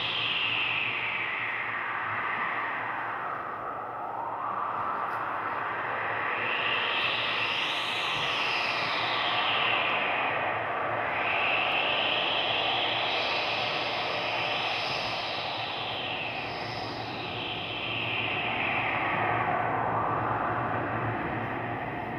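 Electronic soundscape score: a steady wash of noise whose pitch sweeps slowly up and down every few seconds, like a jet passing through a flanger, over a low steady hum.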